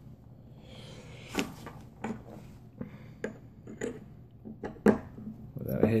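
Metal top cap of a Dark Horse rebuildable dripping atomizer being handled and fitted onto the deck: a few light, separate metal clicks, the sharpest about one and a half seconds in and again near the end.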